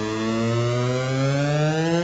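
A sustained buzzing tone with many overtones, its pitch slowly rising.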